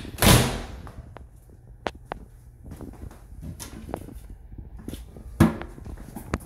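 A short, loud rushing burst near the start, a few light clicks about two seconds in, and a sharp knock about five and a half seconds in: handling and knocking noises in a small tiled bathroom.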